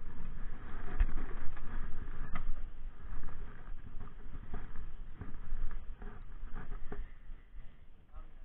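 Irregular rustling and light clicking from a spinning rod and reel being handled close to the microphone, over a low steady rumble.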